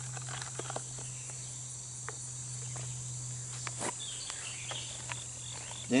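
A steady high-pitched chorus of insects in late-summer grass, over a low steady hum. Scattered small clicks and rustles come from gear being handled in a nylon pouch.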